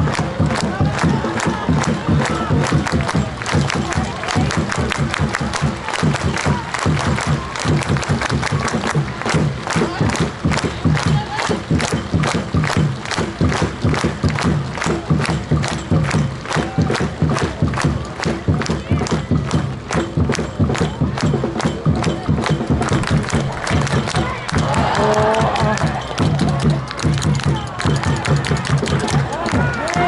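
Football stadium crowd clapping in unison, a steady rhythm of a few sharp claps a second, over general crowd noise.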